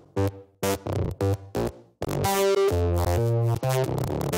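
Electronic music with synthesizer: choppy stabs cut by brief silences, then about halfway through a full, steady synth chord with bass comes in.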